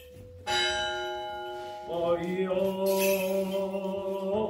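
A single stroke of a church bell, its ring dying away slowly. About two seconds in, men's voices begin a slow, held Byzantine chant.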